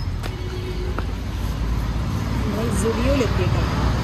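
Street ambience: a steady low rumble of road traffic, with a person's voice heard briefly about two and a half seconds in.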